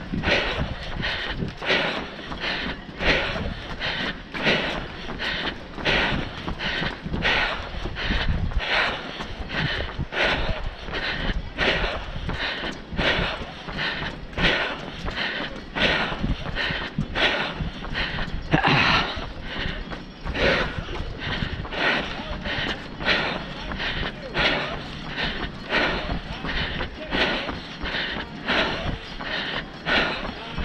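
A runner's breathing and footfalls, close to a body-worn camera, in a steady rhythm while running, with rumbling wind noise on the microphone underneath.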